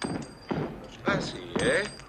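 Several short vocal exclamations from people, without clear words; the loudest come between about one second in and near the end.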